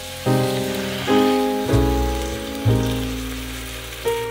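A whole marinated chicken sizzling in hot oil in a frying pan, a steady hiss, under background piano music with a new note or chord about once a second.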